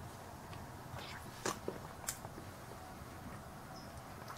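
Quiet room with a low steady hum and a few faint, brief clicks, the clearest about one and a half and two seconds in.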